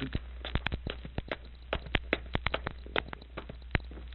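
Crackle and irregular pops of old recording surface noise over a steady low hum, with no speech or music.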